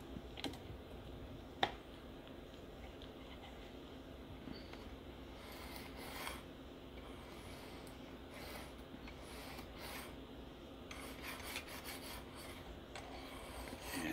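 Coarse 150-grit diamond sharpening stone, held in a guided stone holder, drawn in a few short strokes along a steel knife edge from about midway on: light test strokes to see whether the stone's angle matches the existing bevel. A single sharp click comes early on.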